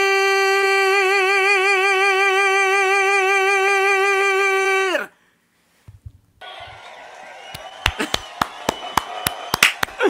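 A man's powerful sung voice holds a long high final note, steady at first and then with vibrato, and ends with a downward fall about halfway through. After a moment of silence, sharp hand claps come in quick succession near the end.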